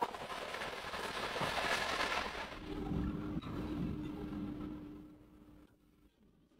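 Cubed liver sizzling in hot oil in a frying pan, starting suddenly as it hits the pan and dying away near the end. A faint steady hum runs under the sizzle from about halfway through.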